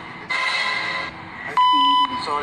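A loud, steady electronic beep, one flat tone like a TV censor bleep, starts about a second and a half in and runs for about half a second. Before it, a hissing noise fills most of the first second. Both play from the show through a phone's speaker.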